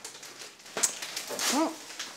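Patterned gift-wrapping paper with a foil layer rustling and crinkling as a present is unwrapped by hand, with a short voice-like sound, rising then falling, about one and a half seconds in.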